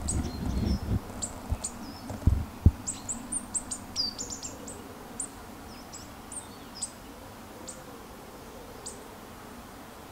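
Coal tits calling: many short, thin, high-pitched calls, busiest in the first half and thinning out toward the end. Low rumbling and a few dull knocks come in the first three seconds.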